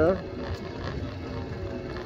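E-bike climbing a steep hill slowly under heavy load: steady low rumble of tyres and wind on the microphone, with a faint steady hum from its 750 W brushless rear hub motor pulling two riders.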